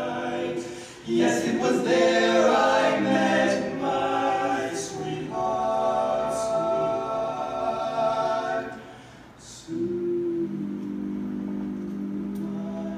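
Barbershop quartet singing a cappella in close four-part harmony, holding long chords. The chords break off briefly about a second in and again near the end before the voices come back in.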